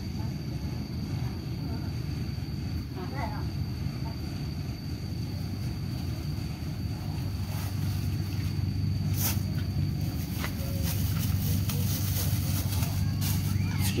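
A steady low rumble throughout. From about halfway on come many small crackles and clicks: a plastic bag being handled and a spoon working in a clay mortar.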